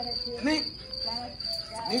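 Crickets chirping in a steady, high, evenly pulsing trill, with a voice speaking briefly a few times over it.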